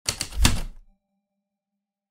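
Typewriter keys striking, a quick run of four or five clacks with the heaviest about half a second in, then a faint fading ring.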